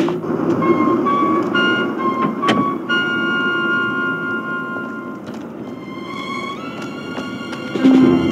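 Background music: held high notes that step upward over a low rumbling bed, fading a little in the middle and swelling again near the end.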